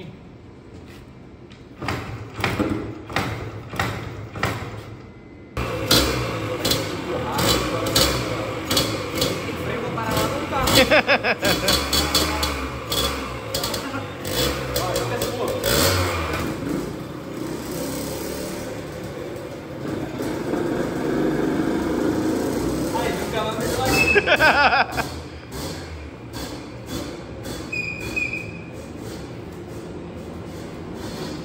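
A 1991 Yamaha DT 180 two-stroke dirt bike being push-started along a concrete garage lane: scattered knocks at first, then rolling and running feet, with two short spells of fast-repeating noise as the engine is turned over, about eleven seconds in and again near twenty-four seconds.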